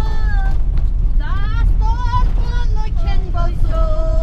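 Minibus engine and road rumble inside a crowded passenger cabin, with a high voice over it in long held notes that slide up and down.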